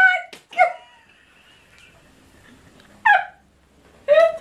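Women laughing helplessly, mostly silent: a few short high-pitched squeals at the start, a faint thin squeak, and one falling squeal about three seconds in.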